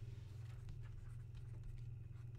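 Stylus scratching and tapping on a tablet screen as words are handwritten, with faint short strokes over a steady low hum.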